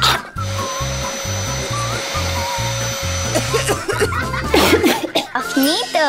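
Upbeat background music with a steady bass beat. Under it a vacuum cleaner whirs steadily for about four seconds, then stops.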